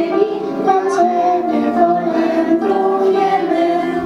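A song with children's voices singing long held notes over instrumental accompaniment.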